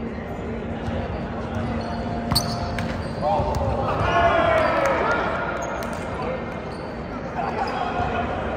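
A volleyball struck with one sharp smack about two and a half seconds in, followed by players' shouts in a large gym hall, with a second call near the end.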